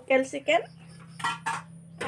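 A woman's voice briefly, then two quick clinks of metal kitchen utensils a little over a second in, over a steady low hum.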